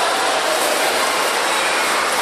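Steady, hiss-like background noise of a large indoor public hall, with indistinct voices faintly in it.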